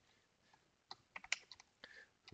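Computer keyboard keystrokes typing a number: a quick run of faint clicks in the second half, after a near-silent first second.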